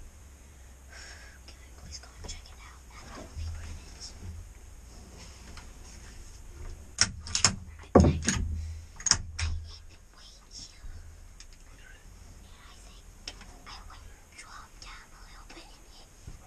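Low whispering, with a burst of sharp clicks and knocks about seven to nine and a half seconds in, the loudest around eight seconds, as a scoped rifle is handled on its rest.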